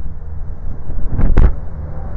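A 2017 Jeep Grand Cherokee's rear door is shut with a single heavy thump about a second and a half in, over a steady low rumble.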